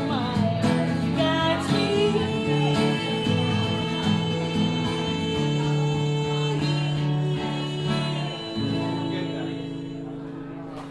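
A woman singing with a strummed acoustic guitar in the closing bars of a song, holding long notes. Near the end a last chord rings on and fades.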